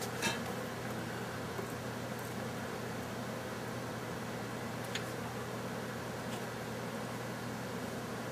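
Steady background hiss with a faint low hum, and a single faint tick about five seconds in.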